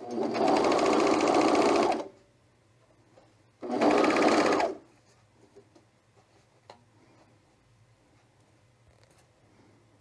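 Juki MO-1000 serger running in two short bursts, about two seconds and then just over a second, overlocking stretched elastic onto fabric. Afterwards only a few faint ticks.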